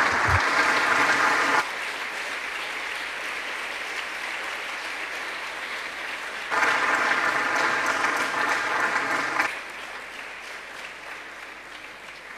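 Audience applauding. The clapping is louder for the first second or so and again for a few seconds in the middle, then dies away near the end.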